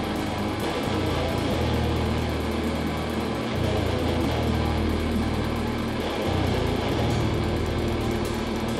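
A live rock band playing loudly: electric guitars, electric bass and drum kit, with the bass holding long low notes that change every second or two.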